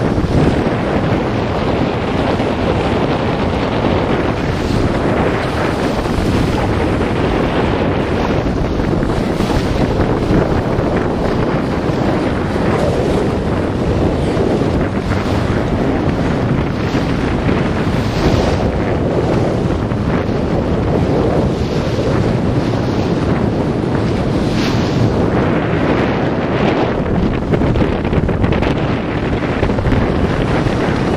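Steady wind buffeting the microphone aboard a boat at sea, over the wash of water and the boat's running noise.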